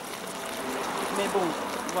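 A large stainless-steel pot of cassava leaves and vegetables boiling, a steady hiss.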